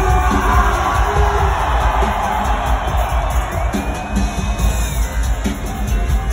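Loud live concert music with a heavy bass line, and a large crowd cheering and yelling along over it.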